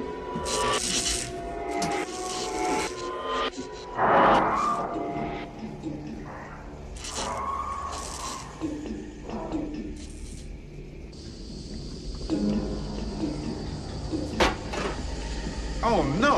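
Film soundtrack: music with a person's wordless vocal sounds and short hissy bursts over a steady low hum.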